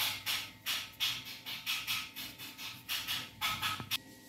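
Crinkly packaging wrap rustling in a quick series of short bursts as a watch case is worked out of its box tray.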